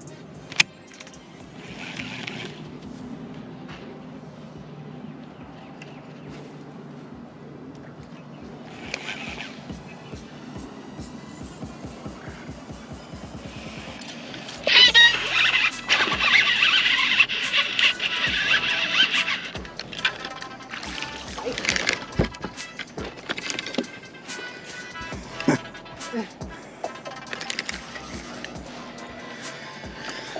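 Background music, with a loud dense stretch about halfway through lasting a few seconds and scattered clicks and knocks in the second half.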